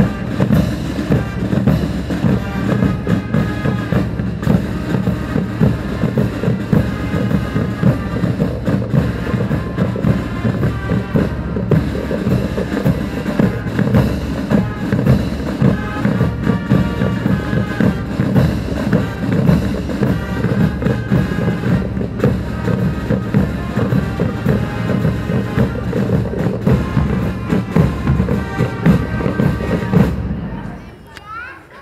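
Fanfare corps playing as it marches: fanfare trumpets over a steady beat of marching snare and bass drums.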